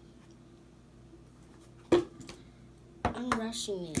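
A single sharp knock about halfway through, against quiet room tone, followed by a voice near the end.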